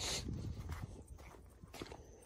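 Faint footsteps on dirt ground, with a brief rustle of plastic greenhouse film right at the start.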